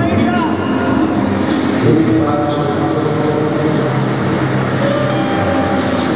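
Ballroom dance music playing over a hall's loudspeakers, with sustained notes, mixed with a steady murmur of spectators.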